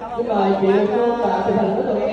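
Speech only: a person talking close up, with other people chattering in the background.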